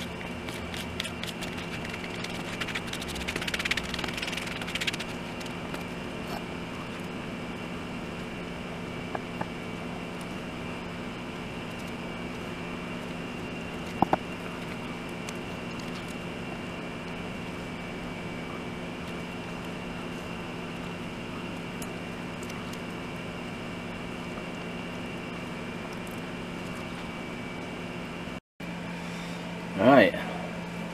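A steady machine hum with several fixed tones runs throughout. About three seconds in comes a brief scratchy scraping of a wooden stir stick mixing epoxy on cardboard, and a single sharp click follows near the middle.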